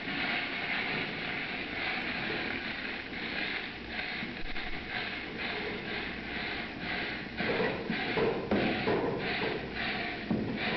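Choux pastry mass (flour in boiling water and fat) being stirred as it cooks: a rhythmic scraping swish, about two strokes a second, with heavier strokes near the end.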